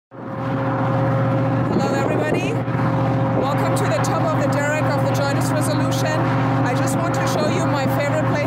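Steady machinery hum from a drill ship's rig, a constant drone that holds several fixed pitches, with indistinct voices over it from about two seconds in.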